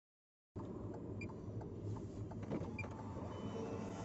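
Silence for the first half second, then the steady low road and engine noise heard inside a moving car's cabin, with a few faint ticks.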